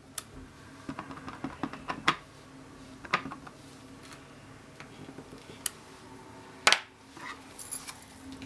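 Light taps and clicks of a clear acrylic stamp block being pressed down onto card stock on a cutting mat and handled, a scattered series of sharp taps with a louder knock near the end.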